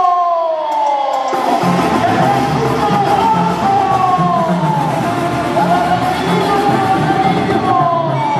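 A man's voice draws out a long falling note through the PA, and about a second and a half in live ranchera band music starts, with a steady bass beat under falling melody lines.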